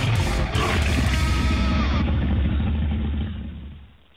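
Loud channel intro sting: music with a heavy, deep rumble underneath and a brief falling tone partway through, fading out over the last second.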